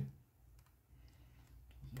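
Ballpoint pen writing on paper: a few faint clicks and scratches of the tip as numbers are written.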